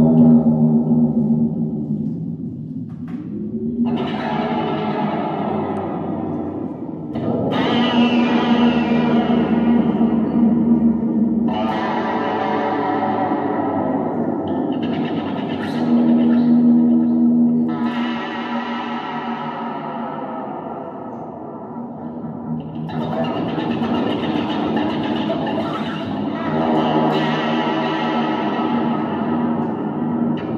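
Electric guitar played through effects with distortion and echo, making free abstract sound textures rather than tunes: long sustained tones over a steady low drone, with dense layers swelling in and falling back every few seconds.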